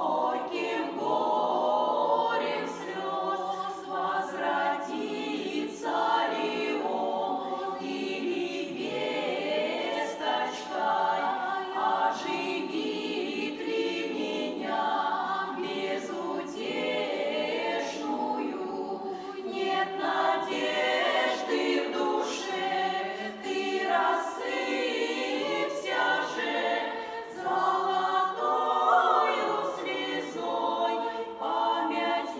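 Women's folk vocal ensemble of about ten voices singing together in harmony in Russian folk style.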